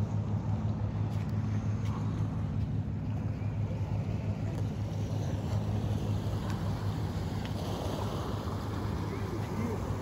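Steady low drone of a boat's motor out on the water, under wind and the wash of waves, with faint voices near the end.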